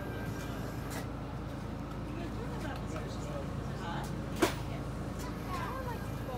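Donut Robot Mark II mini donut fryer running with a steady low hum under faint background voices, and one sharp click about four and a half seconds in.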